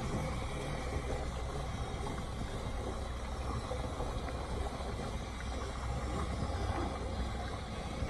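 Yamaha 115 outboard motors idling with a steady low hum.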